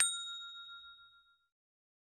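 Notification-bell "ding" sound effect of a subscribe animation: one bright chime struck once, ringing away over about a second and a half.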